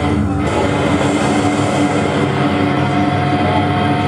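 Slam death metal played live at high volume, led by distorted electric guitar, with a held note ringing through.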